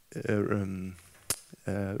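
A man's drawn-out hesitation "uh", then a single sharp click just past a second in.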